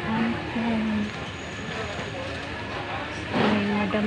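Background chatter of a busy market crowd. Nearby voices are heard briefly near the start and again near the end, over a steady hum of crowd noise.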